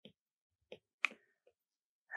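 Four faint, short taps of a stylus nib on a tablet's glass screen while handwriting, the loudest about a second in.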